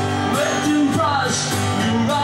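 Live rock-and-roll music: a guitar played through an amplifier, with singing.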